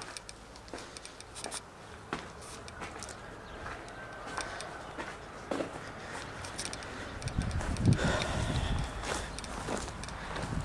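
Footsteps over rubble and gravel, with scattered short clicks and scuffs; a louder low rumble rises in the last few seconds.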